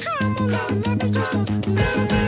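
Upbeat background music with a steady bass beat and a sliding, bending lead line over it.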